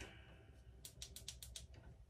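Near silence: room tone, with a faint run of about seven small, quick clicks around the middle.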